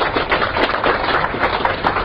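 Audience applauding: many hand claps in quick, irregular succession.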